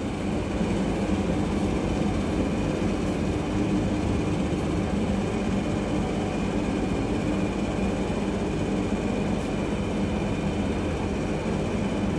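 Steady machine hum and rumble, unchanging throughout, with a few faint steady tones over it.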